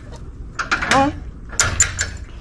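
Small metal parts clinking and rattling in a few short clusters, a louder one about the middle and another near the end.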